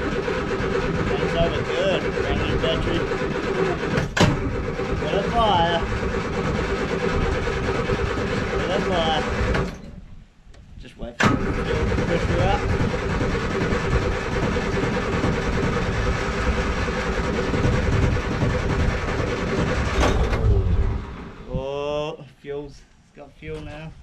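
Classic Mini's A-series four-cylinder engine started on a fresh battery after months of sitting: it runs steadily for about ten seconds, cuts out, then is started again about a second later and runs on until near the end.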